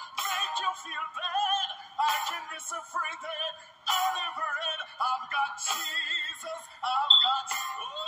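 A live gospel medley, with singing over drums and cymbals, playing through laptop speakers: thin and tinny, with no low end.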